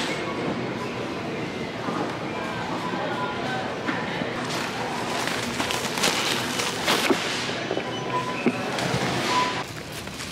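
Busy shop ambience: indistinct voices with background music playing.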